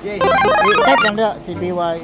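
Mobile phone playing a quick electronic melody of short stepped notes, like a ringtone, for about the first second, followed by voices.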